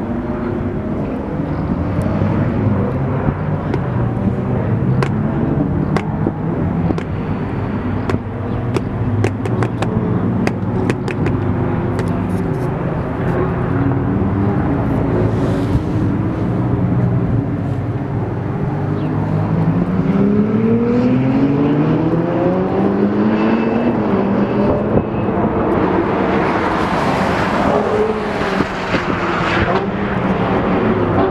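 Ferrari sports car engines on a race track: engine note throughout, one car accelerating with pitch rising through its gears about two-thirds of the way in, then a loud pass-by near the end. A run of sharp clicks in the first half.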